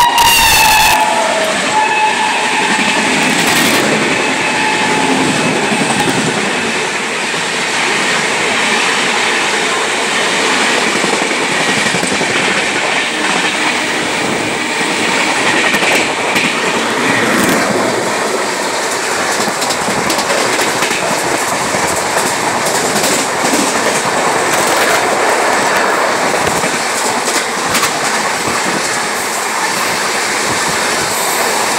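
An Indian Railways express passing close by at speed behind an electric locomotive. The locomotive's horn falls in pitch and ends in the first second or so as it goes by. Then comes a steady loud rumble and rattle of the passing coaches, with the clickety-clack of wheels over rail joints.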